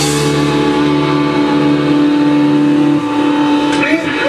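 Amplified electric guitar holding a sustained final chord of a live rock song, ringing on steadily without drums; the lower notes stop about three seconds in and the rest fades near the end.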